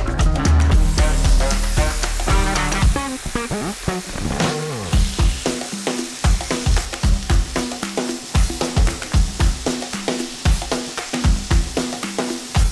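Chicken livers sizzling as they sear in a hot frying pan, the sizzle starting about a second in and growing louder near the middle, over background music with a steady drum beat.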